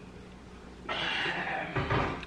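A person eating a spoonful of chili: a short breathy mouth noise about a second in, after a moment of quiet.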